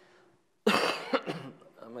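A single loud, harsh cough a little over half a second in, sudden and dying away within about a second, with a word of speech starting near the end.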